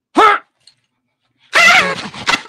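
A man's short, loud shouted 'huh!' that falls in pitch. About a second and a half in, he breaks into loud, excited yelling.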